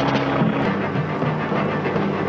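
Steady drone of a small propeller plane's engine, heard on a film soundtrack under background music whose notes change every fraction of a second.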